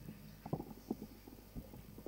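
A few faint, dull thumps over low background noise, the two loudest about half a second apart near the start.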